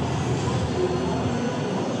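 Steady background din of a noisy exhibition hall: a dense, even mix of noise with faint wavering tones running through it.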